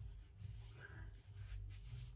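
Near silence: quiet bathroom room tone with a faint low rumble.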